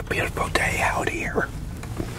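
A man's voice talking for about a second and a half, without clear words, over a low steady hum.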